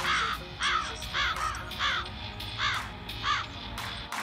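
A crow cawing about six times in a row, each call a short harsh note, spaced roughly half a second to three-quarters of a second apart.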